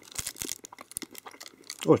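Clear plastic snack wrapper crinkling in the hand as a sticky dried fruit haw roll is held and eaten: a run of small irregular crackles and clicks.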